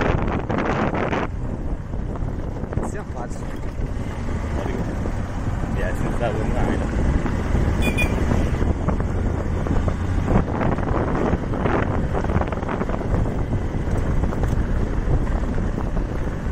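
Wind buffeting the microphone on a moving motorcycle, with the motorcycle's engine and tyre noise running steadily underneath.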